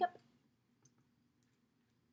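A few faint, sparse clicks from a liquid foundation bottle and its cap being handled, over quiet room tone.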